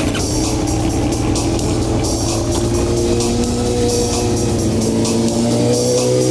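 Background music with a steady drum beat over sport motorcycle engines running, their pitch rising slowly in the second half as they accelerate.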